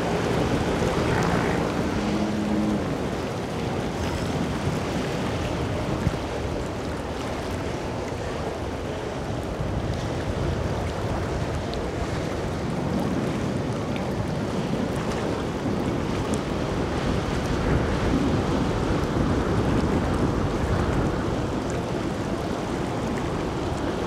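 Motor yachts running past at cruising speed: a steady rush of engine noise and wake on the water, with wind buffeting the microphone. A few steady low tones sound in the first couple of seconds.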